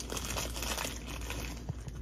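Crinkling and rustling of food packaging being handled, a run of small dense crackles with a few sharper ticks near the end.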